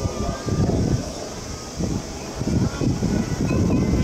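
Wind buffeting the camera microphone in uneven gusts, a low rumbling noise that swells and drops every second or so.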